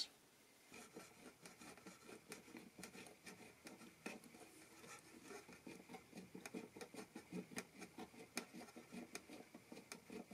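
Faint, repeated scratchy ticking of a hand-turned jeweler's pin drill boring a pilot hole into the wooden neck block inside an acoustic guitar body, a few ticks each second.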